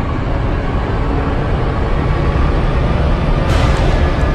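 Sound design for a news channel's logo animation: a deep, steady rumble, then a bright whoosh about three and a half seconds in as the logo bursts onto the screen.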